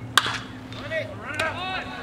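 A single sharp crack of a pitched baseball arriving at home plate, followed by people calling out and shouting.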